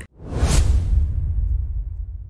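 Logo-intro sound effect: a whoosh that swells to a peak about half a second in, over a deep rumble that slowly dies away.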